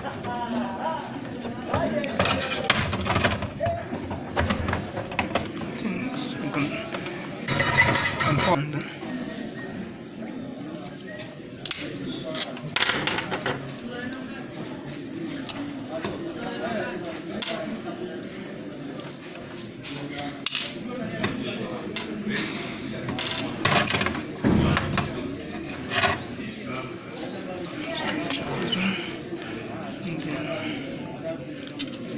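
Indistinct talking that is not picked out as words, with a short burst of hiss about eight seconds in and a few sharp clicks scattered through.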